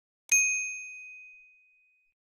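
A notification-bell 'ding' sound effect: one bright chime struck about a third of a second in and ringing down over about a second and a half.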